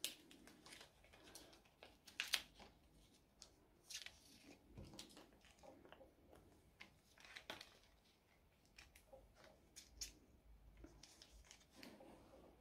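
Faint rustling and crinkling of clear plastic binder pocket pages as cardstock filler cards are slid into the pockets, with scattered soft taps and scrapes of the cards against the sleeves.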